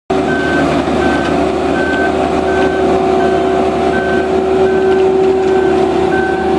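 Boatyard travel lift running, with a steady engine hum and its warning beeper sounding short, even beeps about one and a half times a second.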